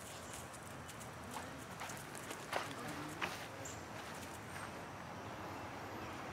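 Light footsteps on dry leaves, twigs and dirt: a scatter of soft crunches and clicks, a few sharper ones in the middle, over a low outdoor background.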